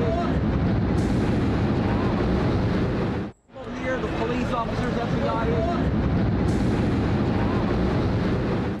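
A deep, continuous rumble with wind buffeting on a TV news crew's outdoor microphone, which the narrator takes for the sound of an explosion. It cuts out for a moment a little over three seconds in, and the same passage plays again, opening with a man's voice.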